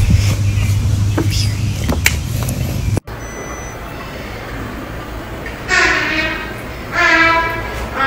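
Wind buffeting a phone microphone, a steady low rumble with a few clicks, cut off suddenly about three seconds in. Then a quieter hiss, with three held pitched tones in the last couple of seconds, each lasting under a second.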